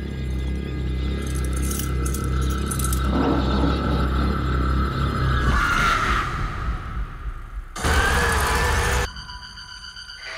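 Horror film trailer soundtrack: dark music over a steady low hum and a held high tone, swelling about six seconds in. Near the end a loud noisy hit lasts about a second and cuts off abruptly.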